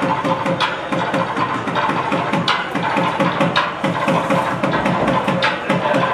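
Temple ritual music: fast, continuous drumming, several strokes a second, with a sharper crack about once a second, over a steady held tone.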